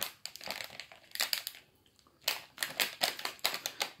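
Plastic wrappers of individually wrapped Choco Pie Long snack bars crinkling as they are handled, in irregular bursts with a short pause a little before halfway.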